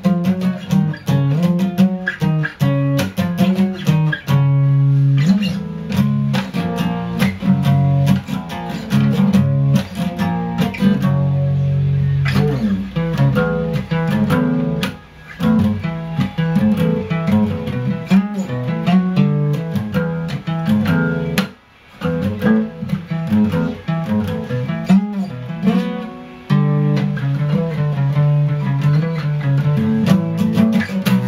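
Acoustic guitar strummed hard and fast in pop-punk chord riffs, one riff running into the next. There are a few brief breaks in the playing, the deepest about two-thirds of the way through.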